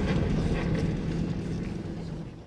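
Cabin noise of a supercharged Toyota Land Cruiser FZJ80 driving: the inline-six engine's steady drone with low road rumble, slowly fading.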